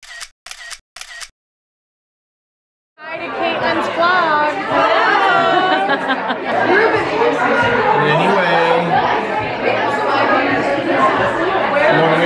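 Three short, sharp clicks in quick succession, a gap of dead silence, then from about three seconds in a room of several people chattering and talking over one another.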